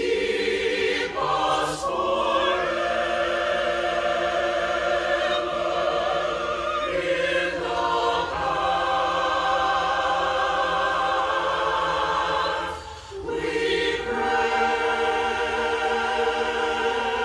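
Virtual choir singing sustained chords in harmony, its singers recorded separately and mixed together, with men's voices carrying most of the passage. The singing breaks briefly near the end, then resumes.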